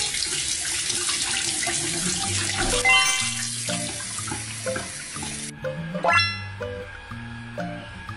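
Kitchen tap running into a bowl as raw meat is rinsed by hand, cutting off abruptly about five and a half seconds in, under light background music.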